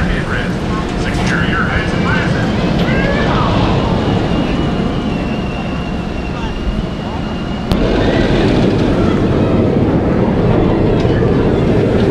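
Raging Bull steel hyper coaster train rumbling along its track, with people's voices and shouts over the roar in the first few seconds. The rumble jumps suddenly louder about two-thirds of the way through.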